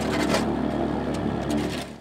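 Engine of a pothole-patching truck running steadily, with the scraping of a broom and shovel over loose asphalt patch material. It fades out near the end.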